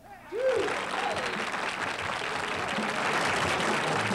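Studio audience applause breaking out about a third of a second in, just after the song's last note dies away, with a couple of shouted cheers near the start, then steady clapping.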